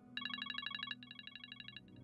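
Telephone ringing: two short, rapidly trilling rings with a brief gap between them. The second ring is a little quieter.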